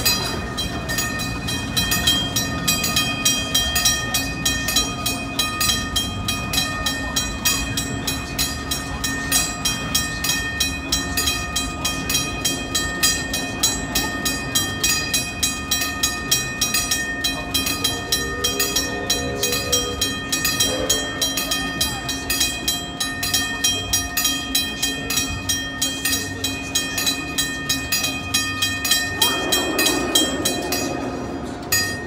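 Railroad grade-crossing bell ringing continuously with rapid, even strikes, the crossing's warning that a train is passing.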